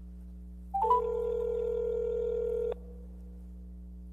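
Electronic telephone tone: a quick rising blip, then a steady pitched tone held for about two seconds that cuts off suddenly, over a constant low electrical hum.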